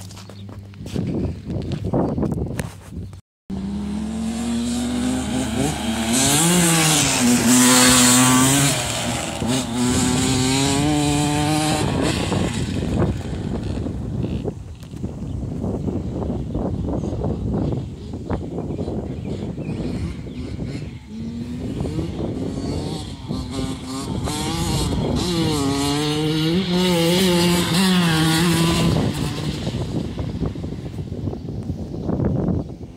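Suzuki RM85 two-stroke dirt bike being ridden past, its engine revving up and easing off. It is loudest twice, once early and again near the end as the bike comes by close.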